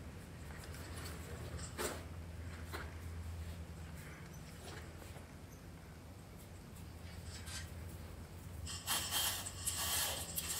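Faint steady low hum with a few light metal knocks. From about nine seconds in, a chain hoist's hand chain rattles as it is pulled to lower the hanging steel smoker chamber.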